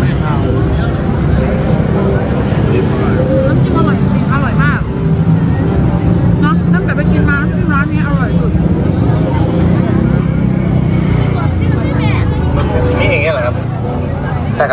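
People talking close by over the din of a busy street, with a steady low rumble of traffic and crowd beneath.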